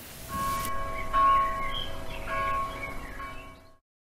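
Bells ringing: several strikes with long ringing tones that cut off suddenly just before the end.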